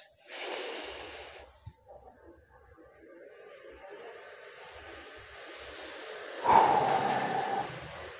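A man breathing hard through a deadlift repetition: a sharp, hissing breath out at the start, a slow, faint breath in, then a louder breath out about six and a half seconds in.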